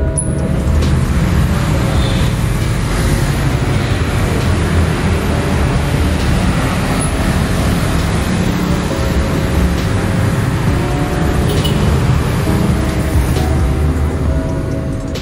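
Steady rush of road traffic from motorbikes and a passing bus, with background music playing under it.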